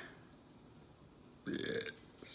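A man's single short burp about a second and a half in, brought up after gulping down a glass of milk.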